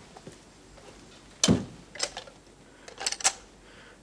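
A single dull thump about a second and a half in, followed by a light click and then a quick cluster of small clicks and knocks near the end.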